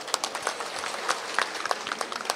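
Scattered applause from a small group of people, with individual handclaps standing out irregularly.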